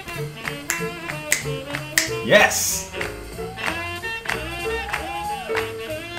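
Live swing big band playing up-tempo jazz, with brass and piano over a steady beat. A loud rising sweep with a burst of hiss cuts across about two seconds in.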